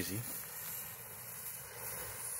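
Lit fuse of a smoke ball fizzing with a steady, quiet hiss as it burns down.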